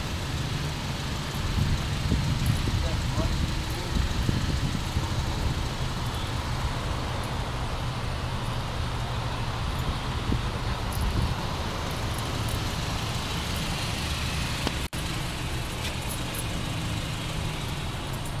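A 2010 Honda CR-V's 2.4-litre four-cylinder engine idling steadily, a continuous low rumble heard from outside the vehicle.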